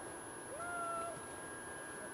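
A dog whining: one short, faint note that rises and then holds steady for about half a second.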